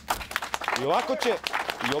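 Small crowd beginning to clap, scattered hand claps thickening into applause. A voice calls out briefly about a second in.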